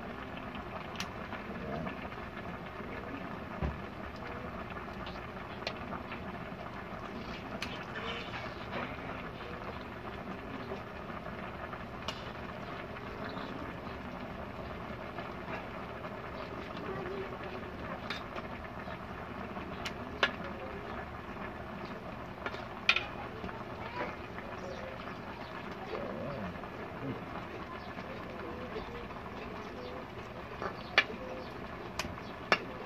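Linked pork longganisa sausages simmering in a metal pot, a steady cooking sound, with scattered sharp clicks of kitchen scissors snipping the sausages apart and metal tapping the pot.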